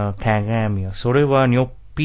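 A voice speaking, with the pitch swooping up and down from syllable to syllable.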